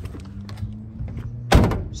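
A Toyota Land Cruiser 79 series door shut with one solid thunk about one and a half seconds in, over the steady idle of its 4.5-litre V8 turbo diesel.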